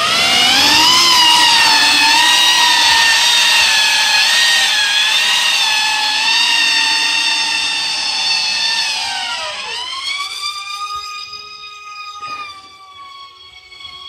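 Electric motors and propellers of a homemade foam VTOL RC plane whining at high power through its takeoff, the pitch rising and then wavering while the start is unstable. Around nine to ten seconds in the whine dips and settles into a quieter, lower, steadier tone as the plane flies on.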